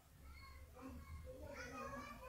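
Faint high-pitched vocal sounds in the background: a short call about half a second in and a longer one near the end.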